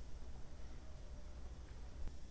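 Quiet room tone: a faint, steady low hum with a soft hiss, and no distinct sounds.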